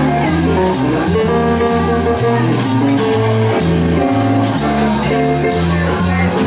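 Jazz piano trio playing live: piano with bass and drums, the bass playing steady notes about two a second under the piano while cymbal strokes keep time.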